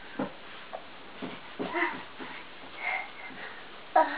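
A young child's few short, wordless, breathy vocal noises and grunts, with pauses between them.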